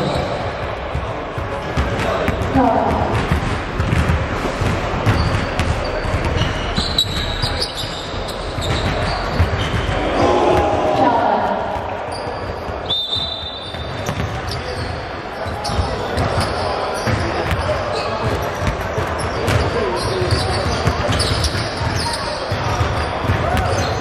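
Basketballs bouncing on a hardwood gym floor, with repeated dribbling bounces, and people's voices in the background of a large indoor hall.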